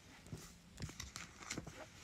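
Faint, scattered light taps and clicks of a metal steelbook case being handled, about half a dozen over two seconds.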